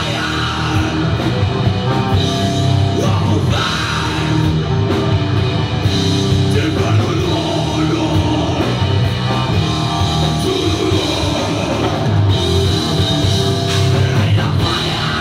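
A heavy metal band playing loud live: distorted electric guitar, bass guitar and drum kit.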